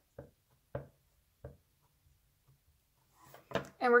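A clear acrylic-mounted photopolymer stamp tapped onto an ink pad to ink it up: three short, soft taps in the first second and a half.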